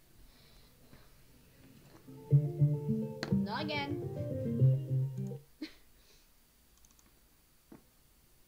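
Voice-memo recording playing back: plucked guitar notes for about three seconds, starting about two seconds in, with a short sliding vocal sound over them in the middle. A single click follows.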